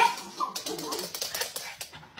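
A small terrier making short, broken vocal sounds, with a sudden loud sound at the very start.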